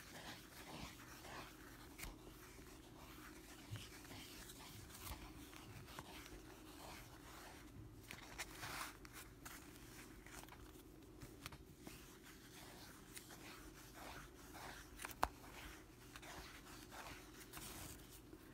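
Faint, repeated soft swishing and rustling of yarn being wrapped quickly around a piece of cardboard, with a single sharp click about fifteen seconds in.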